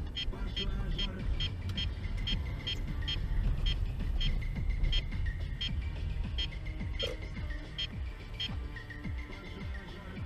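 Electronic dance music with a steady beat and regular high ticks, playing on the car radio inside the cabin over a low engine and road rumble.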